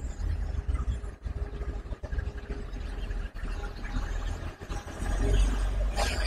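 Wind buffeting the microphone in gusts, a low rumble that swells about five seconds in, with road traffic going by underneath.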